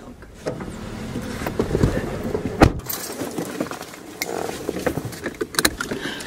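Handling noise and clicks inside a car, with one sharp knock about two and a half seconds in and a few quicker clicks near the end.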